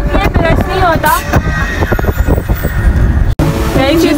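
Steady road and engine rumble inside a moving car, heard under a voice; the sound drops out for an instant at an edit near the end.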